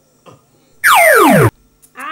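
A loud added film sound effect about a second in: a pitched tone sliding steeply down for about half a second, then cutting off abruptly.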